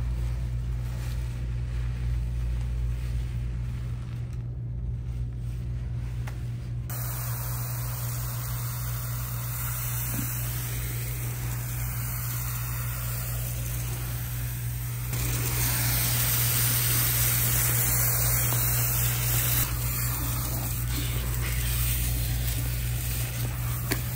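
Water spraying from a salon shampoo-bowl sprayer onto lathered hair. It starts about a third of the way in and is louder for a few seconds past the middle, over a steady low hum.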